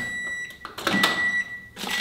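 Frigidaire microwave oven beeping: a high, steady electronic beep repeated about three times, the signal that its cooking cycle has finished. A sharp click comes near the end as the door is pulled open.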